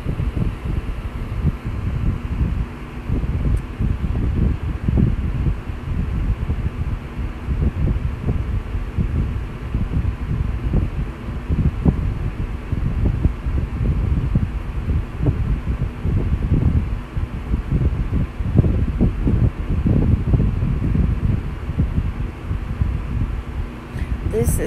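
Kitchen tap water running into a stainless-steel sink while a makeup brush is rinsed and squeezed under the stream: a steady, low, uneven rush of water.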